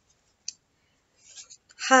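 Near silence broken by a single short click about half a second in and a soft breath-like noise, before a woman's voice starts at the very end.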